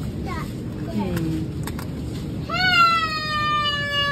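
A young child's drawn-out whining cry: one long high note that starts about two and a half seconds in and slowly falls in pitch, over a crowd's chatter.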